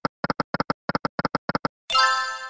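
Video slot game sound effects: a regular run of short electronic notes in pairs, about three pairs a second, as the spinning reels come to a stop. A bright ringing chime starts near the end.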